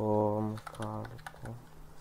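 A short run of quick keystrokes on a Redragon S107 computer keyboard, clustered around half a second to a second in.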